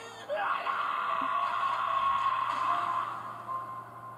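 A man's anguished scream from an anime soundtrack: one long scream lasting nearly three seconds, then fading. Faint high music tones come in near the end.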